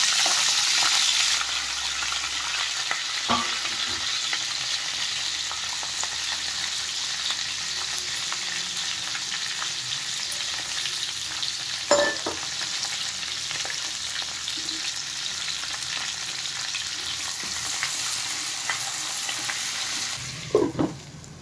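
Onion and green capsicum pieces frying in hot oil in a pan: a steady sizzling hiss, louder for the first second or so. A few short knocks sound over it, the clearest about twelve seconds in.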